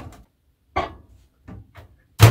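A few short clicks and knocks from a microwave being handled by hand: one sharper knock a little under a second in, then two faint clicks.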